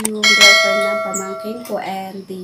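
A click, then a bright bell ding that starts about a quarter second in and rings out for over a second: the notification-bell sound effect of a subscribe-button animation.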